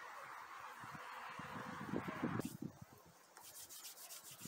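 A steady hiss that cuts off abruptly a little over halfway through, followed near the end by hands being rubbed together in a run of quick, short scraping strokes.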